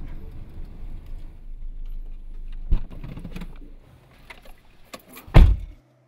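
Car engine running, heard from inside the cabin, with a sharp click about two and a half seconds in. The engine sound then drops away, a few small clicks and rattles follow, and a car door shuts with a heavy thump near the end.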